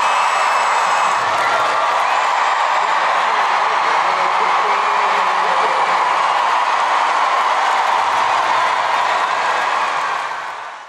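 Large arena crowd cheering and applauding steadily after a gymnastics routine.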